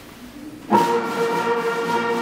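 A school wind band, brass to the fore, comes in together loudly about two-thirds of a second in, holding sustained notes.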